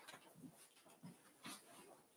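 Near silence: room tone with a few faint, short, soft sounds.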